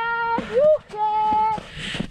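A woman's voice giving long, drawn-out, high-pitched "juhu" cries of joy, with a short laugh between them.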